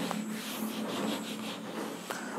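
A handheld whiteboard eraser rubbed back and forth across a whiteboard in repeated strokes, wiping off marker writing.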